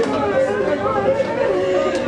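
Speech only: a man talking, with other voices chattering around him.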